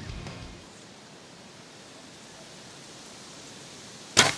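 Background music fades out in the first half second, leaving a steady, faint hiss of outdoor woodland ambience with no distinct events.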